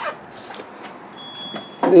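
Low, even room noise in a pause between words, with a faint thin high tone lasting under half a second about a second in; a man's voice starts again near the end.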